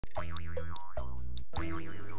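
Cartoon boing sound effect: a jaw harp (Jew's harp) sproing, twanged three times in quick succession. Each twang is a steady low drone with an overtone that wobbles up and down, the last running on past the end.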